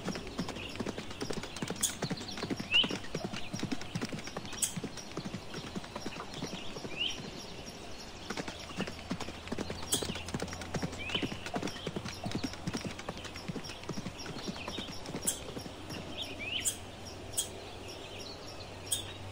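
A horse trotting, its hooves beating in a steady run of hoofbeats.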